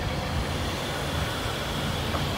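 Hyundai Tucson's power panoramic sunroof closing: a faint, steady electric-motor whine over the low, steady hum of the 2.4-litre four-cylinder engine idling.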